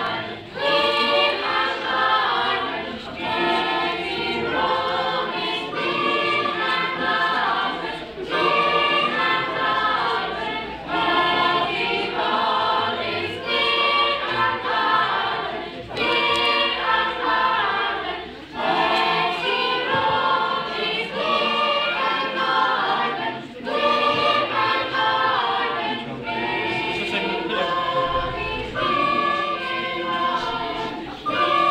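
A small school choir of teenagers, mostly girls, singing together in phrases with brief pauses between them.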